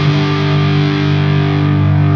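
Les Paul electric guitar played through Guitar Rig 6's Van 51 high-gain amp with delay and reverb: a distorted chord held and ringing out steadily.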